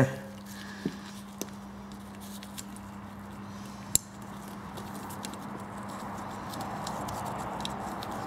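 Quiet handling of small carburettor parts by gloved hands: a few light clicks of metal parts, the sharpest about four seconds in, over a steady low hum.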